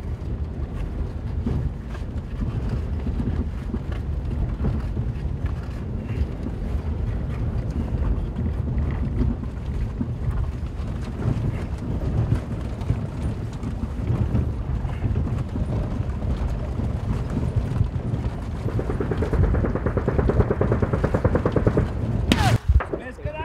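Car cabin noise while driving over a rough dirt mountain track: a steady low rumble of engine, tyres and suspension heard from inside the vehicle. A higher, steady tone joins in for the last few seconds.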